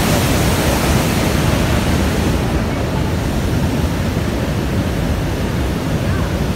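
Roar of Niagara's American Falls: a loud, steady rush of falling water with no break, its hiss easing slightly after about two and a half seconds.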